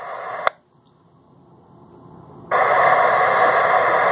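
Dispatch radio channel between transmissions during a pause in a 911 broadcast announcement. The transmission hiss cuts off with a squelch click about half a second in and the channel goes much quieter. About two and a half seconds in the transmitter keys up again and a steady hiss runs on until the dispatcher resumes.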